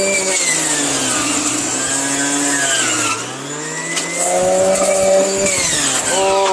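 Electric centrifugal juicer's motor running at high speed while produce is pushed down the feed chute. Its pitch sags for a couple of seconds as the motor takes the load, then climbs back up.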